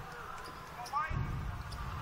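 Basketball bouncing on a hardwood court over low arena background noise.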